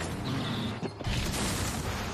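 Creaking, rumbling mechanical noise of an off-road safari truck jolting over a rough track, with a brief drop just under a second in.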